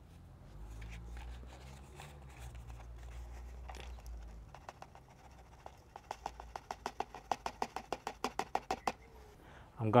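Faint handling sounds as moist worm bedding and castings are tipped from a plastic tub into a PVC worm tower. About six seconds in comes a quick run of light clicks or taps, about six a second, lasting some three seconds.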